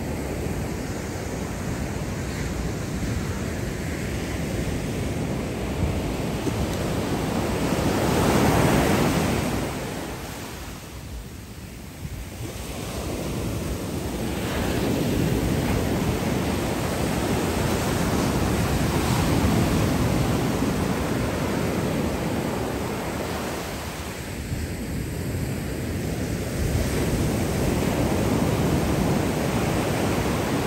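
Ocean surf: waves breaking and foam washing up a sandy shore, swelling and easing as each wave comes in, with a lull about eleven seconds in.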